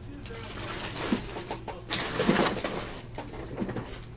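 Trading cards being handled and set onto a stack on a table, a few faint short taps and rustles, with a man's low mumbling in between.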